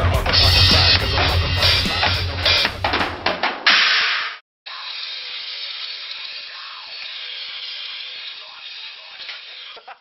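Heavy metal band playing loud, with the drum kit's crashing cymbals and pounding kick and snare prominent. The music breaks off into a burst of noise about four seconds in. After a short gap comes a quieter, thin-sounding stretch with the bass cut away.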